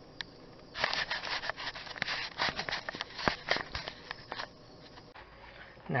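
Hand work on plastic parts and wiring in the engine bay: one click, then a run of irregular clicks and scrapes lasting about three and a half seconds.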